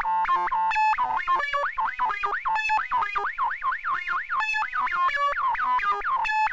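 Modular synthesizer sequence played through a DIY Moog-style transistor ladder highpass filter: a quick run of short pitched notes, several a second. From about a second in, each note has a falling resonant sweep, a throaty, nasal filter sound.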